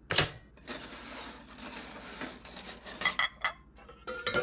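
Kitchen clatter of pots, pans and utensils: a knock at the start, a steady hissing clatter, then a few quick metallic clinks about three seconds in.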